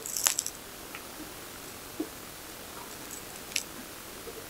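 Quiet room tone with a brief soft rustle and clicks at the start, then a few faint isolated ticks.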